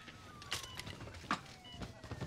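Quiet, scattered knocks and clicks from a metal stretcher gurney being pushed into place, with a faint thin tone slowly falling in pitch behind them.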